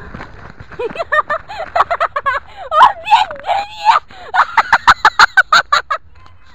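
Children shrieking and laughing, high-pitched and loud, ending in a fast run of laughter in the last second and a half.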